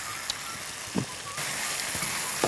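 Pumpkin and tomato curry sizzling in a metal pan as ground spice powder is tipped in and stirred with a wooden spoon; the sizzle grows louder about halfway through.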